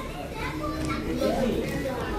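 Background chatter of several people in a busy fast-food restaurant, with children's voices among them.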